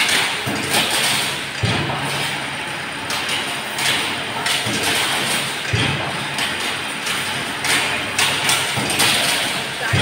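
Chain link mesh making machine running, with a sharp metallic knock recurring roughly once a second over a steady machinery hiss.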